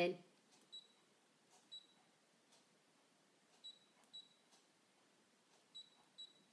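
Brother ScanNCut cutting machine's touchscreen giving short, faint, high beeps as its on-screen keys are tapped with a stylus, five in all at uneven intervals.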